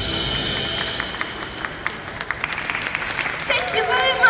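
Audience clapping scattered and irregularly as a song's music stops and its last note dies away. A voice begins speaking near the end.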